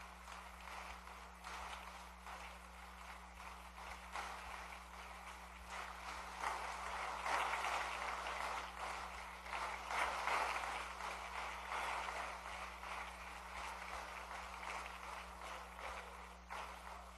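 A crowd of assembly members applauding: a dense patter of many hands clapping that swells to its loudest about halfway through, then gradually eases off.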